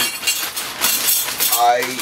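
Broken pieces of a digital camera rattling and clinking as they are shaken out of a plastic zip-lock bag onto a table, the bag crackling.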